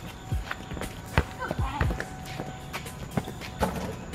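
A basketball bouncing on a concrete court several times, with footsteps and a brief voice, over a background music beat.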